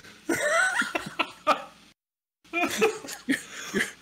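Several men laughing hard, with coughing mixed in. The sound cuts out completely for about half a second midway, then the laughing and coughing carry on.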